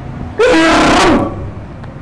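A man's loud vocal exclamation, under a second long and wavering in pitch, starting about half a second in.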